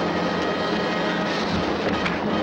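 A loud, steady roaring noise from the film soundtrack, with faint music beneath it.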